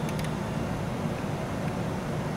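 Steady low hum and hiss, with a couple of faint clicks right at the start from the front-panel controls of a Sencore CR-7000 CRT analyzer being worked by hand.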